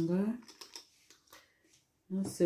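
A voice trailing off, then a few faint clicks and rustles as a cardboard juice carton with a plastic screw cap is handled and lifted, fading to near silence.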